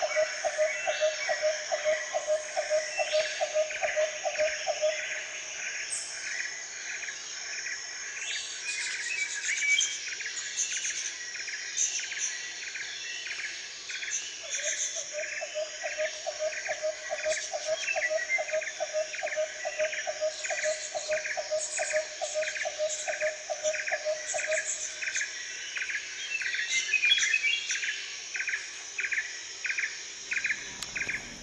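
A chorus of rhythmic chirping animal calls. A steady high insect-like trill runs under a regular chirp about twice a second, and a lower pulsed call repeats about three times a second; that lower call stops about five seconds in, returns about halfway through and fades out near the end.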